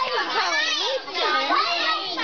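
A crowd of young children talking and calling out all at once, many high voices overlapping without a break.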